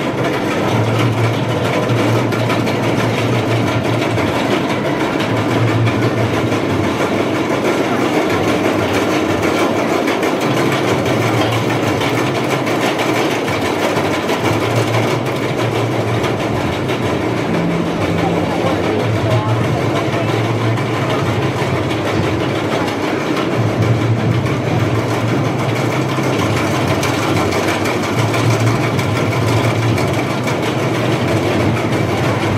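Wooden roller coaster train running on the track, a steady rumble with a low hum that cuts in and out every couple of seconds.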